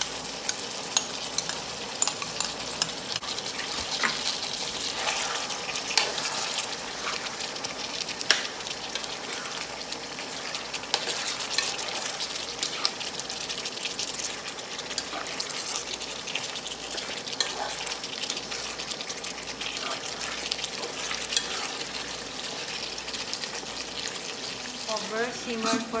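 Beef stew sizzling in a stone-coated wok as tomato sauce is poured in, then stirred, with a utensil clicking and scraping against the pan many times over the steady sizzle.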